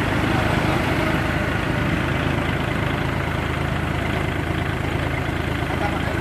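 Kubota L-series compact tractor's diesel engine running steadily while the tractor creeps over loading ramps.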